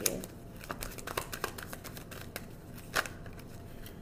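Tarot cards being shuffled and handled: scattered soft papery clicks and flicks, with one sharper click about three seconds in.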